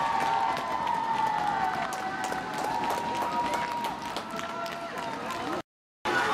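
Arena crowd cheering, with several voices holding long shouts over scattered clapping. The sound cuts off suddenly near the end.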